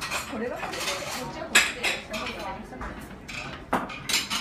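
Plates and cutlery clinking on a table: a few sharp clinks, the loudest about one and a half seconds in and another near the end.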